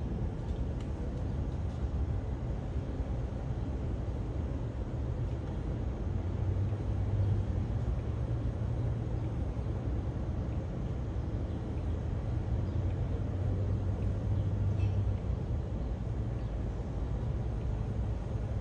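Steady low rumble of airliner jet engines at taxi power on an airport apron, swelling slightly twice.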